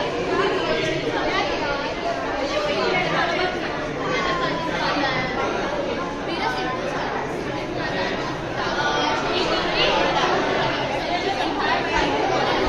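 Many students chattering at once in a classroom, a steady babble of overlapping voices with no single speaker standing out.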